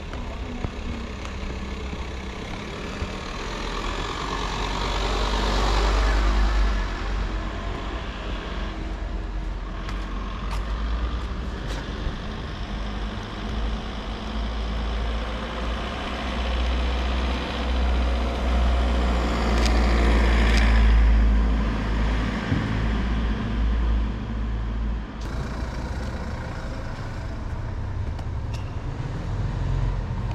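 City street traffic: motor vehicles passing over a steady low rumble, with two louder passes that build and fade, about six seconds in and about twenty seconds in.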